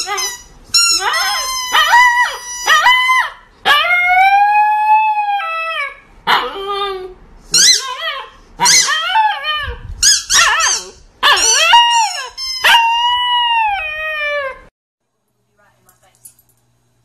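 A husky-type puppy howling and yipping in a run of about a dozen high, wavering calls, with one long rising-and-falling howl about four seconds in.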